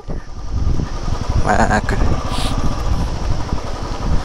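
Motorcycle engine running at low speed while riding a rough gravel track, with frequent uneven jolts and rattles over the stones; a single short word is spoken about a second and a half in.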